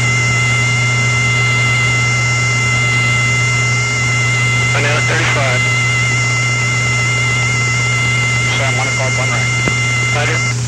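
Steady, high radar-signal tone with slightly wavering overtones on the B-52's cockpit audio, the signal of a Spoon Rest search radar sweeping for the bombers. It runs over the constant hum and hiss of the bomber's intercom recording, with brief faint voices about five seconds in and near the end.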